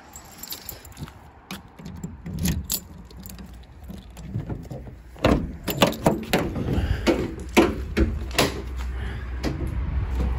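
Rear doors of a Ford Transit Custom panel van being unlocked and swung open, with key and lock rattles. The loudest part is a run of sharp clicks and clunks from the lock, handle and latch in the second half.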